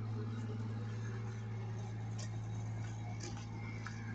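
A steady low mechanical hum, with a few faint footsteps on a paved sidewalk.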